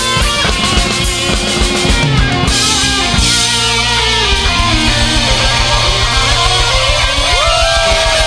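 Live pop-punk band playing loud and upbeat: electric guitars, bass and fast driving drums. Near the end a note slides upward in pitch.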